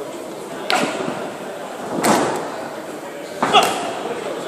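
Three sharp slapping strikes landing in a kickboxing bout, about a second and a half apart, the last the loudest, each echoing in a large hall, over shouting voices.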